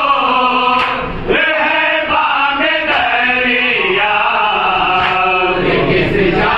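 A group of men singing an Urdu salam (a Shia devotional poem) in unison, unaccompanied, with a lead voice on a microphone and the others joining in. The phrases are drawn-out and sliding, with short breaks between lines.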